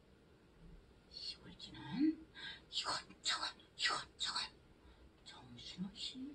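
A woman whispering softly in short breathy bursts, roughly two a second, as she acts out the mouse eating the food.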